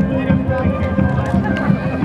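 Music with long held tones playing over the murmur of a crowd talking.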